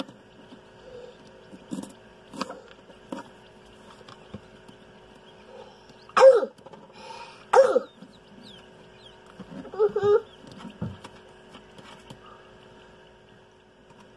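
Steady hum of a circulated-air egg incubator's fan, with a few soft clicks. Over it, three short, loud throaty sounds from a person about six, seven and a half and ten seconds in.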